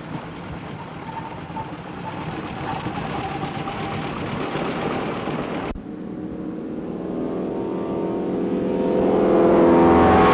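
Propeller aircraft radial engines running on the ground. First a de Havilland Otter's engine runs as it rolls on the runway. After a sudden cut about six seconds in, a de Havilland Beaver floatplane's engine runs at take-off power and grows steadily louder as the plane accelerates on its takeoff dolly.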